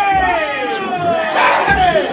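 Crowd of spectators yelling to hype a dancer, with a long drawn-out shout falling in pitch at the start and another about a second and a half in, over the low thumps of a music beat.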